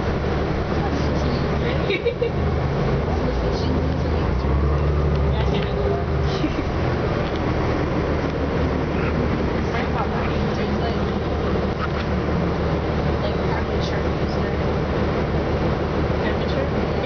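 Orion VII NG diesel city bus heard from inside the passenger cabin, its engine and drivetrain running with a steady low drone as it drives slowly, with a brief knock about two seconds in.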